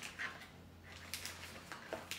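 Faint rustling of paper packaging being handled, a few soft crinkles with quiet room tone between them.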